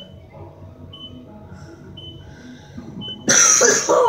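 A man coughing hard about three seconds in, the loudest sound, over the low hum of a Kone traction elevator car travelling up, with a short high beep about once a second as it passes each floor.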